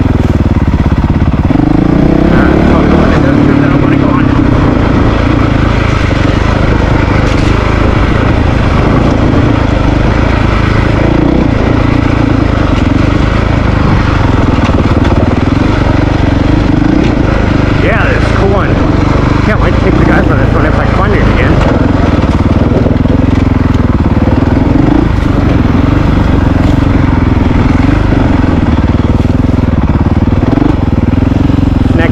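Honda CRF450RL's single-cylinder four-stroke engine running while the bike is ridden, its note rising and falling with the throttle.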